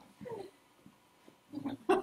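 A person's voice: a brief sound, then quiet, then a louder, choppy vocal burst near the end.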